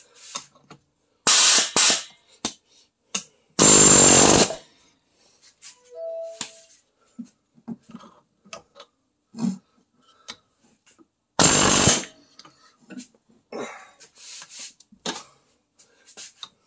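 Pneumatic air chisel with a flat blade hammering a seized brake caliper piston held in a vise, in three short bursts: one about a second in, a longer and louder one near four seconds, and a last one near twelve seconds. Light clicks and knocks of metal come in between. The air gun keeps stopping and has to be restarted.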